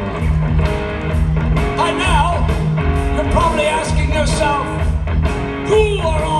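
Live rock band playing loudly: electric guitar with bending lead notes over a steady bass and drum pattern, with singing.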